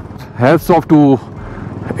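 A man speaks briefly over the steady running of a motorcycle being ridden on the open road.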